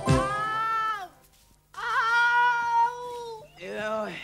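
A voice wailing in long drawn-out cries of mock grief: one held cry that falls away, a short pause, a longer held cry that rises, holds and sinks, then a shorter cry near the end.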